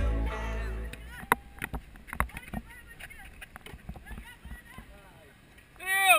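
Background music fades out in the first second. Then come scattered sharp knocks of a basketball bouncing on an outdoor concrete court, with faint voices. A man's voice comes in close and loud at the very end.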